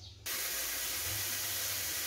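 Cut enoki mushrooms sizzling as they dry-roast in a hot steel wok: a steady hiss that starts abruptly just after the start.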